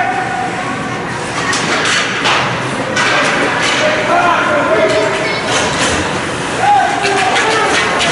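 Ice hockey game sounds in a rink: voices calling and shouting over a noisy haze of play, with several sharp clacks of sticks and puck on the ice and boards.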